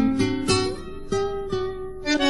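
Instrumental folk music: plucked acoustic guitar notes over a bass line, each note struck and ringing out before the next.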